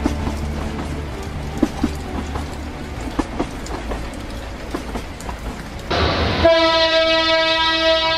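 A passenger train running, with rumble and the clack of wheels over rail joints. About six seconds in, a diesel locomotive horn starts a long, loud blast.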